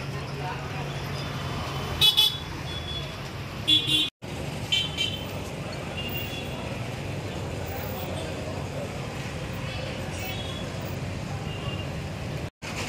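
Busy street traffic with motor scooters and motorcycles running and people's voices in the background. Short vehicle horn toots sound about two seconds in and again near four seconds, and there is a brief silent gap just after that.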